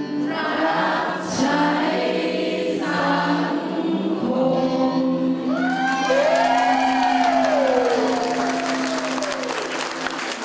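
A group of voices singing together over musical accompaniment, with hand-clapping joining in over the second half.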